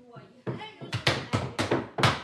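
Hand beaters striking cloth laid on a wooden table: a quick, uneven run of sharp knocks, about three or four a second, starting about half a second in and getting louder.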